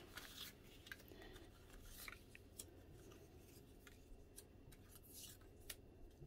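Faint handling of die-cut paper ephemera pieces: scattered light taps and short paper rustles as the pieces are slid out and set down on a self-healing cutting mat.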